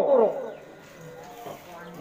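A man's voice trailing off on a falling pitch in the first half-second, then a pause with only faint background noise.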